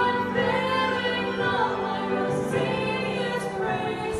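Two women singing a worship song together into microphones, holding long notes.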